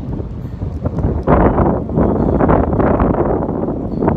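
Strong wind buffeting the microphone, an unfiltered rush and rumble. A heavy gust builds about a second in and eases off near the end.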